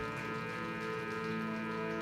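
Live band music: instruments holding sustained chords, with no singing.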